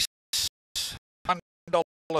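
A race caller's voice in short, clipped bursts, each cut off into dead silence.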